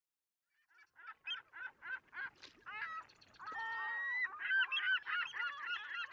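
A flock of birds calling: short, repeated calls, about four a second at first, that build into a dense, overlapping chorus from about halfway.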